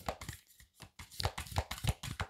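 A deck of archetype oracle cards being shuffled by hand, the cards sliding and slapping together in soft, irregular clicks that come thicker in the second half.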